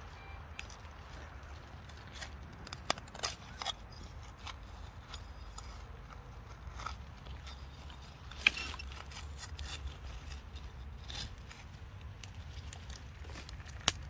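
A metal hand trowel digging in soil and twigs: scattered scrapes and crunches, the sharpest about eight and a half seconds in. A low, steady rumble runs underneath.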